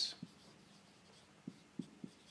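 Dry-erase marker writing on a whiteboard: a few faint, short strokes and ticks of the felt tip on the board, spread over two seconds.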